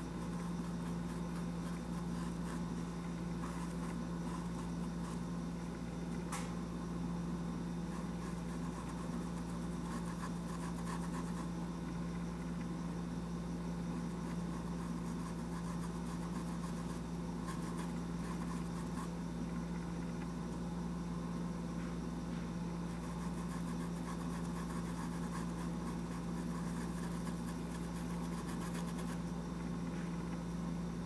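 A steady low machine hum, with one faint click about six seconds in.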